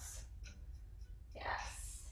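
A woman's single audible breath about one and a half seconds in, a short soft rush of air.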